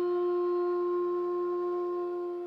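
Bamboo bansuri (Indian transverse flute) holding one long, steady note, with a faint steady drone underneath.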